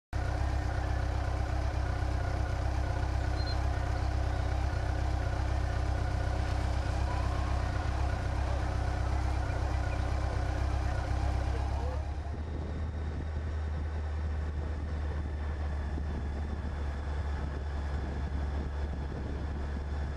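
Steady engine hum of motor vehicles in a bicycle race convoy. The sound changes abruptly about twelve seconds in, to a thinner steady hum.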